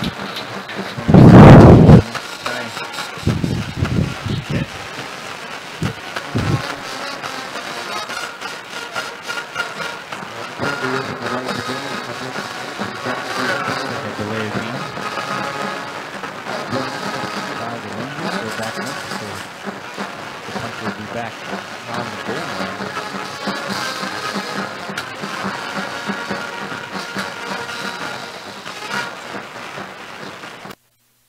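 Stadium ambience at a high school football game: a crowd of voices from the stands mixed with music playing. Near the start there is a loud low buffet of wind on the microphone.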